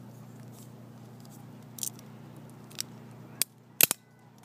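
Handling noise of a phone camera on the move: a few scattered sharp clicks, and two louder clicks in quick succession near the end, over a steady low hum that drops away just before them.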